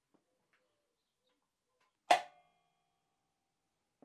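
Tension mechanism of a Pro's Pro Shuttle Express badminton restringing machine giving a single sharp metallic clack about two seconds in, which rings briefly as the string is pulled to tension.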